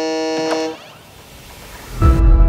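A steady, buzzing pitched tone, held for under a second and cut off with a click, leaving a faint hiss.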